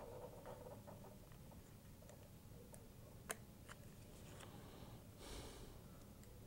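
Near silence with faint small clicks and rustling from fingers handling a small foam tail piece and its tape, with one sharper click about three seconds in.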